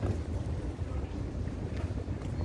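Low, uneven wind rumble buffeting an outdoor phone microphone, with faint background hiss and no distinct event.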